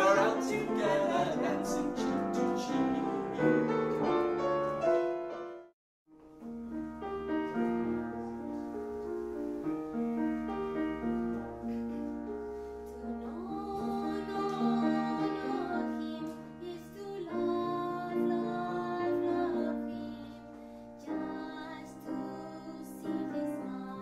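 Voices singing with grand piano accompaniment: a man and a woman singing together, cut off suddenly about six seconds in, then a woman singing to the piano.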